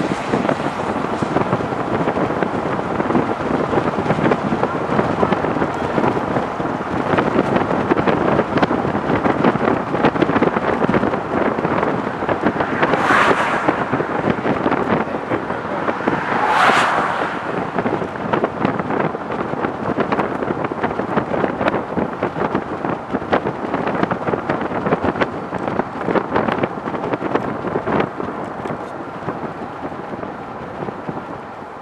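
Wind buffeting the microphone and road noise of a moving vehicle, a continuous rushing rumble. Two brief louder hissing bursts stand out, about thirteen and seventeen seconds in.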